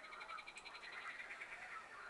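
Faint, rapid high chirping repeated many times a second, like a small bird's trill. It stops near the end.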